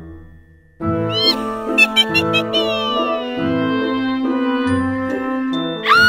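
Halloween-theme background music with a repeating low bass pattern and held notes, starting after a brief lull near the start. Just after it comes in, a cat-like meow sound effect rises and then falls in pitch over about two seconds.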